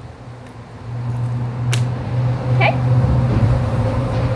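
Low, steady rumble like a passing motor vehicle, growing louder from about a second in, with one sharp click near the middle.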